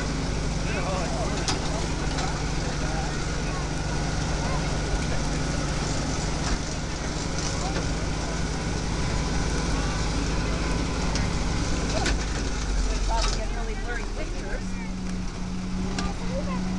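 Farm tractor engine running steadily while pulling a hay ride wagon. Its note changes about twelve seconds in and settles a little higher near the end.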